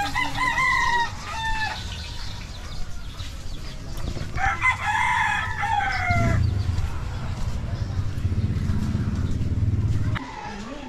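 A rooster crowing twice, each crow about two seconds long and dropping in pitch at the end. In the second half a low steady rumble runs under the scene.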